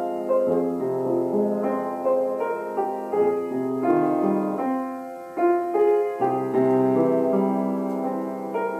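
Background piano music: a melody of held, overlapping notes, with a brief lull about five seconds in before the next phrase.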